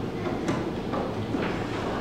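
Pause in a hall: steady room noise, with a single sharp click about half a second in.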